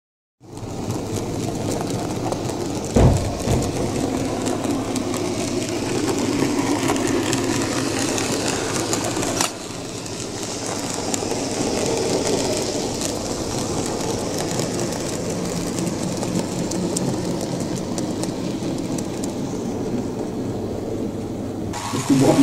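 N gauge model steam locomotive and mineral wagons running on the layout's track: a steady rolling and motor noise that cuts in suddenly just after the start. There is a single knock about three seconds in.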